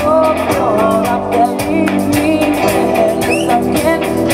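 Live pop-rock band playing through PA speakers: a woman singing over electric guitar, bass guitar, keyboard and a drum kit.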